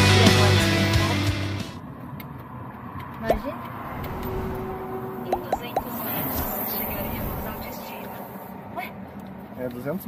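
Background music that stops about two seconds in, followed by the steady running hum of a car heard from inside the cabin, with a few brief snatches of faint voice.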